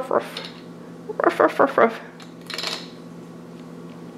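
Small plastic toy figures clicking and clattering as they are set on a plastic toy seesaw on a stone countertop, with a few short vocal sounds a little after a second in.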